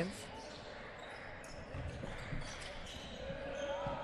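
Faint sounds of live basketball play in a gym: the ball bouncing on the hardwood court and a few light knocks over a low steady background, with a brief high squeak near the end.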